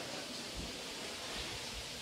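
Quiet, steady hiss of room tone, with a few faint low bumps.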